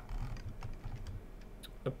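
Scattered light clicks of a computer keyboard and mouse being worked at a desk, over a low steady hum.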